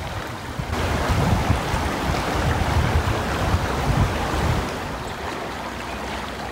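Stream water rushing over shallow rapids, a steady wash that gets louder about a second in. Gusts of wind rumble on the microphone through the middle and die down near the end.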